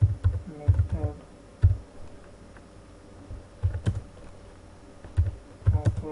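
Typing on a computer keyboard: irregular keystrokes in short clusters, separated by pauses of a second or more.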